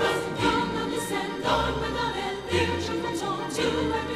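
A choir singing a Christmas carol, with low notes sounding underneath.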